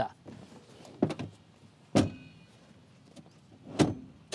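Second-row seat of a Toyota Avanza being folded: three short knocks and clicks from the seat latch and folding seatback, about a second in, about two seconds in, and near the end as the seatback comes down flat.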